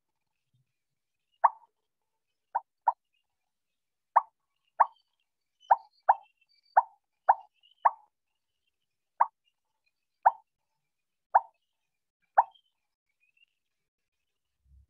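Short electronic pop notification sounds from a computer, about fourteen of them at uneven intervals, each a brief bright blip. They are alerts as participants join the online quiz.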